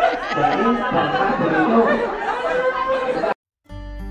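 A room full of adults talking and chattering over one another, cut off abruptly a little past three seconds. After a moment of silence, music starts just before the end.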